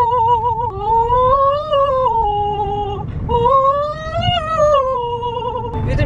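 A woman singing without words, holding two long wavering notes of about three seconds each that slide up and back down, over the low rumble of a moving car's cabin.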